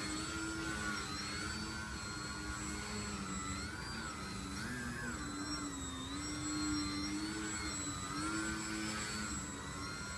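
Electric motor and propeller of a Twisted Hobbies Crack Laser foam RC plane humming as it prop-hangs nose-up in a hover. The pitch keeps wavering up and down with the throttle corrections that hold the hover.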